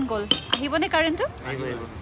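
A woman speaking, broken by two short, sharp clinks in the first half-second.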